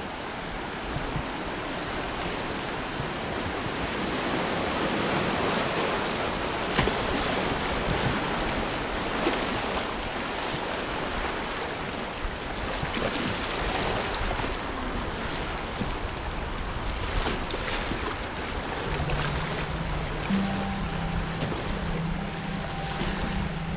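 Fast river current rushing and churning around a kayak running through riffles, with wind buffeting the microphone. Near the end, background music with steady low notes comes in.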